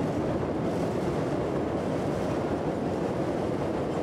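Chicago 'L' elevated train running over the steel elevated structure, a steady noise with no break.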